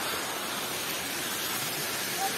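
Steady, even hiss of outdoor background noise with no distinct sound standing out in it.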